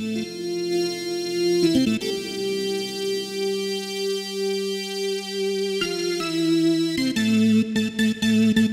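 Yamaha reface YC combo organ on its Ace Tone voice, playing held chords. The chords change about two seconds in, again near six seconds, and once more about a second later.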